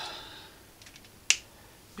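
A single sharp, short click a little over a second in, against a quiet room.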